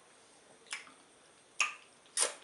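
Two sharp, wet mouth smacks from eating sticky ogbono-and-okra soup with chicken by hand: a small one about two-thirds of a second in and a louder one near the end.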